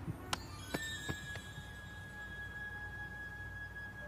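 Film soundtrack: four sharp clicks in the first second and a half, then a single high note held steadily for about three seconds as music begins.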